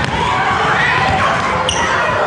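Children shouting and calling out over one another while running, their footsteps thudding on the sports-hall floor, with the echo of a large hall.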